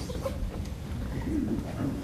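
Faint, indistinct off-microphone voices over a steady low room hum, with a few short low vocal sounds.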